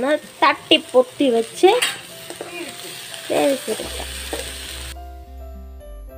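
Chopped leafy greens (Mysore cheera) frying in an aluminium kadai: a steady sizzle with a spoon stirring through them. About five seconds in the frying sound cuts off and background piano music takes over.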